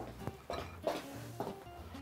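Quiet background music, with a few light clicks about a third of a second, a second and a second and a half in.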